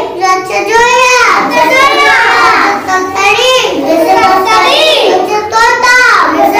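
Young children reciting aloud from an Urdu picture book in a loud sing-song chant, each word drawn out on a rising-and-falling pitch about once a second.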